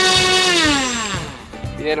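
Electric RC plane motor and propeller running at full throttle with a steady whine, then spooling down and stopping about a second and a half in, as the throttle is cut at the end of a pre-flight throttle check.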